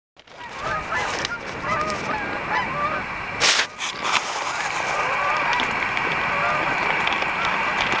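A flock of Canada geese in flight honking, many overlapping calls, thicker in the first half and thinning out later. A brief rush of noise cuts across about three and a half seconds in.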